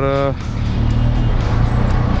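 Benelli TRK 502X's parallel-twin engine running at low speed in stop-and-go traffic: a steady low rumble. A voice trails off right at the start.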